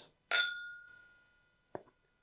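Two glass whiskey tasting glasses clinked together in a toast, one bright ring that dies away over about a second. A short soft knock follows near the end.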